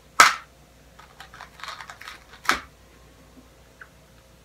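Jelly beans being handled and picked out of their bag: two sharp crinkles about two seconds apart, with a quick run of small clicks and rustles between them.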